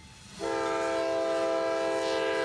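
Diesel freight locomotive's air horn sounding one long, steady blast, several notes held together as a chord, starting about half a second in.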